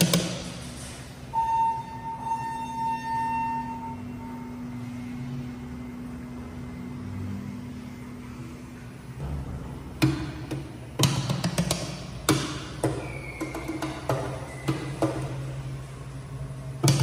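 Elevator hall call button beeping once after being pressed, a steady electronic tone lasting about two and a half seconds, over a low hum. From about ten seconds in, music with drum beats.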